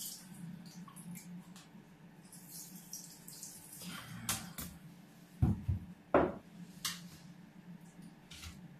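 Water dripping and trickling off the just-lifted plastic pump head of an Aquael Unimax 250 canister filter, then two heavy thumps about five and a half and six seconds in as the head is set down in an acrylic bathtub, with a few light plastic clicks. A faint steady low hum sits underneath.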